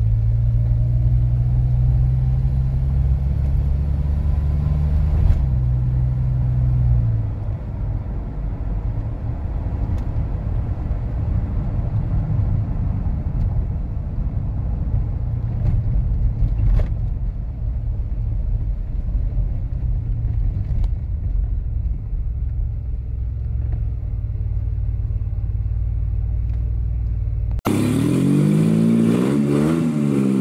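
DeLorean DMC-12's V6 engine and road noise heard from inside the cabin while driving, a steady low drone whose note drops and turns rougher about seven seconds in as the revs fall. Near the end it cuts abruptly to a different sound, several pitched tones sweeping up and down.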